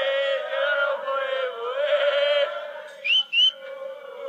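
A group of footballers chanting a celebration song together. About three seconds in come two short, shrill whistles that rise in pitch; these are the loudest sounds here.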